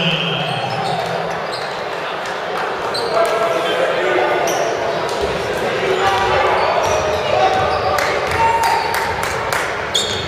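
Basketball dribbling and bouncing on a hardwood court, irregular sharp knocks, over indistinct voices of players and spectators echoing in a large gym.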